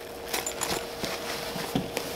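Rustling of nylon fabric and straps with scattered soft clicks and knocks as a rip-away medical pouch's MOLLE base is worked onto the MOLLE webbing of a duty bag.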